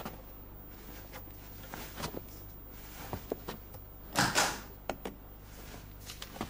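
Paper being handled on a desk: soft rustling and small taps, with one louder, brief rustle about four seconds in.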